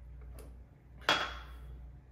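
A small glass set down on a marble countertop: one sharp clack about a second in that fades over about half a second with a faint ring, after a fainter tick.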